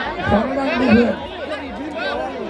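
Speech: a man talking in Thai, with crowd chatter behind.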